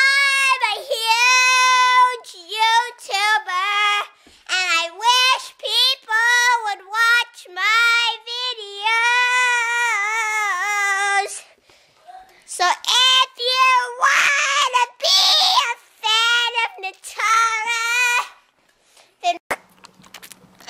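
A young girl singing in a high voice, in phrases with long held, wavering notes and a short break about halfway through. The singing stops a little before the end.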